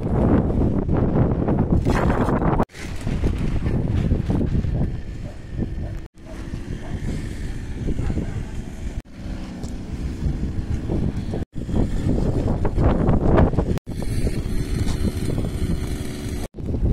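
Wind buffeting the microphone: a loud, low, rushing rumble with no clear pitch, broken off abruptly several times.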